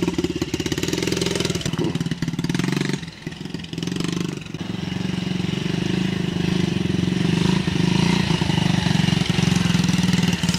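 Yamaha TTR-90 mini dirt bike's small four-stroke single-cylinder engine running steadily as the bike is ridden, its sound dipping briefly about three seconds in and then coming back up.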